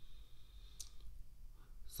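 A pause in the talk: a low hum and a faint high whine that stops about a second in, with a single short click just before it stops.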